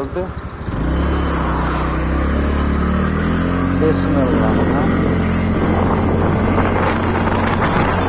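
A small two-wheeler's engine pulls away about a second in, rising in pitch as it accelerates, then runs steadily at road speed.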